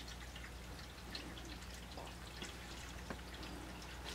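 A cat moving inside a cardboard cat box: a few faint, scattered ticks and taps of paws against the cardboard over a steady low hum.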